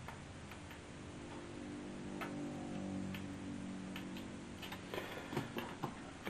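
Small, irregular clicks and ticks of a tiny self-tapping screw and fingers or tool working against a radio's steel chassis as the screw is started in its hole, over a faint low hum.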